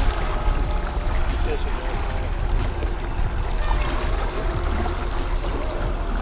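Small boat's outboard motor running at trolling speed, with steady wind noise on the microphone and water rushing past the hull.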